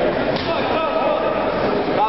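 A crowd of spectators' voices, several people calling out and talking over one another at once.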